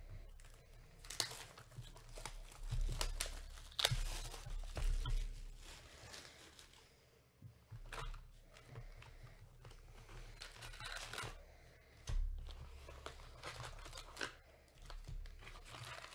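Plastic wrap being torn and crinkled off a sealed hobby box of baseball cards, then foil card packs rustling as they are lifted out of the opened box. The crinkling comes in irregular bursts, loudest in the first few seconds.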